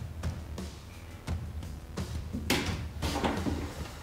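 Background music with a steady beat, and a wooden bookcase door swinging open with a couple of knocks about two and a half to three seconds in.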